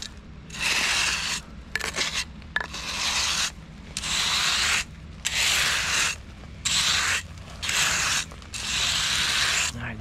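Flat steel hand trowel scraped back and forth over loose chip stone, about ten rasping strokes of under a second each with short pauses between: smoothing and grading the screeded bedding stone for pavers.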